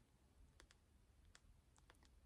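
Near silence with about half a dozen faint, sharp clicks, two of them close together near the end.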